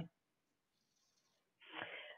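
Near silence over a video call, with a faint intake of breath near the end just before speech resumes.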